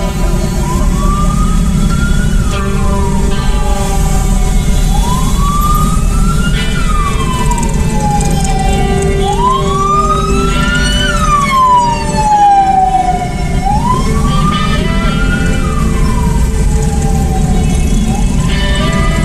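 Ambulance siren wailing: a slow rise then a longer fall in pitch, repeating about every four seconds, four times, over a steady low rumble.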